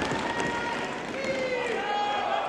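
Members of a parliamentary chamber calling out and murmuring over the hall's general noise, with one drawn-out call about halfway through.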